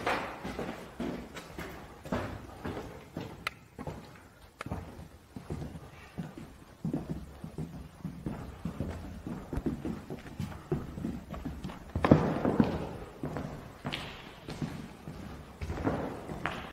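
Footsteps on a hard floor scattered with rubble and debris, an irregular run of thuds and small crunches, with a louder stretch of scuffing about twelve seconds in.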